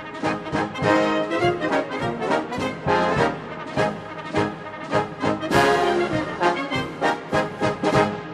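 A Navy military band's brass playing musical honors, punctuated by regular sharp strokes. The music stops right at the end and rings away.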